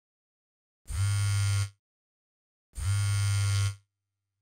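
A phone's vibration alert buzzing against a hard tabletop: two buzzes of about a second each, roughly two seconds apart.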